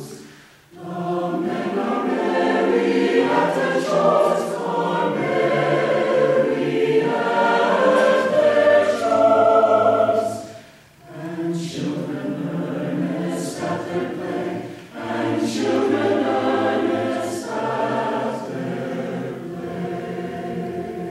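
Mixed choir of men's and women's voices singing a choral piece, breaking off briefly between phrases: once about a second in and again about halfway through.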